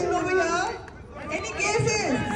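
Several people talking at once: indistinct crowd chatter, with no single clear speaker.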